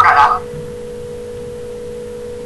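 A steady, even hum on one constant tone, after a brief snatch of voices at the very start.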